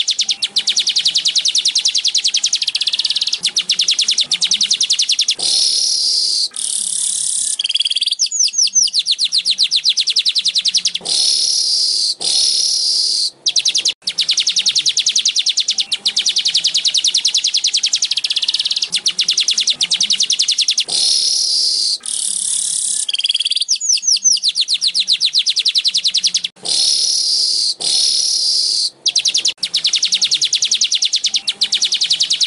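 Streaked weaver song: long runs of very rapid, buzzy chattering notes broken by short higher wheezy phrases and a few falling sweeps. The same sequence of phrases comes round again about every fifteen seconds.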